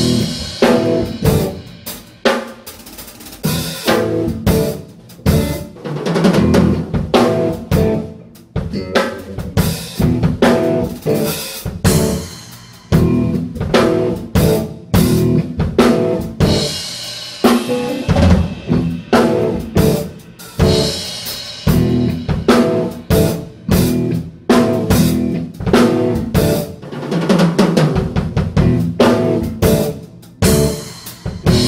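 Electric guitar, bass guitar and drum kit trio playing a jerky stop-start passage: short phrases and drum hits break off suddenly and start again several times, imitating a skipping CD.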